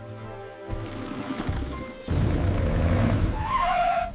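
Cartoon background music, then about two seconds in a louder vehicle rumble with a skid, as a monster truck pulls up.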